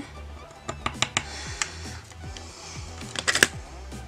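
Background music with a few small sharp clicks and taps from metal tweezers on the plastic nail-accessory flattening tool, a quick cluster of them a little after three seconds in.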